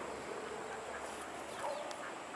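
Quiet outdoor background with a distant animal calling briefly near the end.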